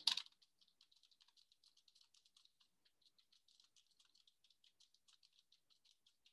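Faint, rapid keystrokes on a computer keyboard, several clicks a second in an uneven typing rhythm.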